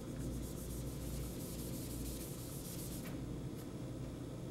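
Soft rubbing on a whiteboard as drawn marker lines are wiped off, over a low steady room hum.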